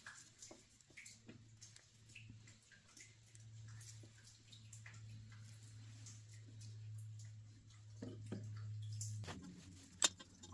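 Near silence: a faint steady low hum with scattered small clicks of parts being handled on a bare diesel cylinder head, as a hydraulic lash adjuster (tappet) is swapped.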